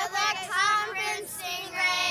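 Young girls singing together in high voices, drawing out two long notes.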